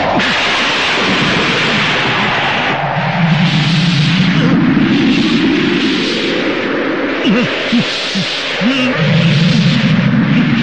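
Film soundtrack storm effects: a loud, dense rushing of wind and blowing sand that surges and fades in swells about once a second, with a few brief sliding sounds near the end.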